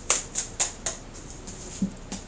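A deck of tarot cards shuffled by hand: a run of crisp card slaps about four a second, fading after the first second. Near the end a short low knock comes as the deck is set down on the wooden table.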